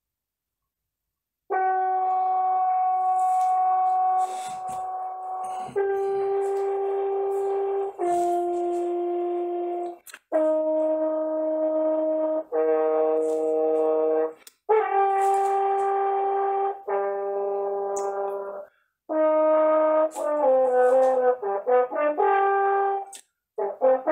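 French horn playing a slow phrase of long held notes, starting about a second and a half in, broken by short pauses for breath, with a quicker run of notes near the end. Heard over a video call: the sound cuts to dead silence between phrases.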